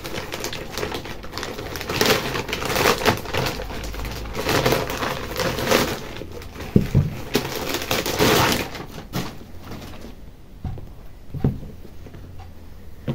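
Plastic packaging rustling and crinkling as a pair of sneakers is unwrapped and pulled out of a plastic bag. The rustling dies down after about nine seconds, leaving a few soft knocks as the shoes are handled.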